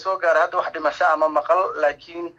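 Speech only: a voice talking without pause.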